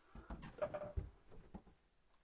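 Faint handling noise: soft knocks and rustling, with a stronger low knock about a second in and a brief faint hum just before it.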